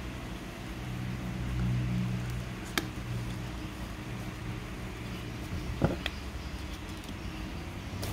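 Steady low hum that swells for a second or so about a second in, with one sharp click about three seconds in and a couple of soft taps near six seconds, from hand-sewing the webbing on a plastic sail slider with needle and thread.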